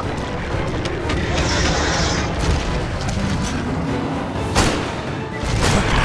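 Action film soundtrack: dense orchestral-style score with heavy booming hits, and two sharp impacts in the second half.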